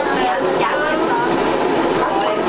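Chatter of many people talking at once, a steady mix of overlapping voices with no single speaker standing out.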